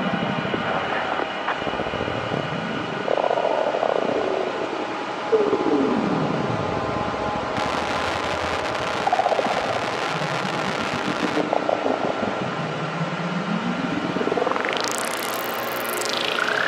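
Dark psytrance intro: electronic synth drones with several falling pitch glides, and a big rising sweep near the end, with no beat.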